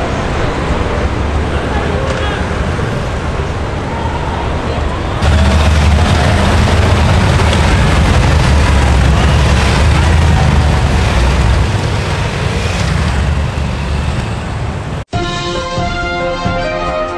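Police motorcycle engines running in city traffic as a column of police motorcycles rides off, a steady low rumble that jumps louder about five seconds in. It cuts off suddenly about a second before the end, and theme music takes over.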